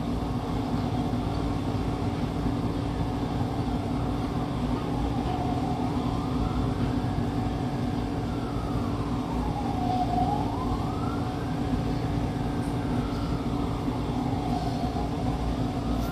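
A siren wailing slowly up and down from about five seconds in, each rise and fall taking four to five seconds, over a steady low hum.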